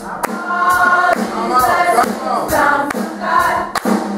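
Youth choir singing a gospel song in unison, over a steady percussive beat of about two strikes a second.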